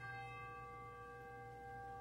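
Quiet, sustained musical chord of several steady notes. It is freshly sounded right at the start, its upper notes fading within about half a second while the rest ring on.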